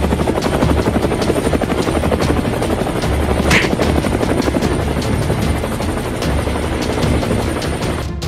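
Military helicopter rotor chopping in a rapid, steady beat as the helicopter hovers overhead.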